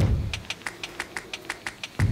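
A rapid, even series of light clicks, about six a second, over a faint low rumble.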